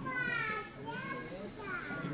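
Children's voices in a crowded room: a child calls out in a high voice near the start, over a low murmur of other voices.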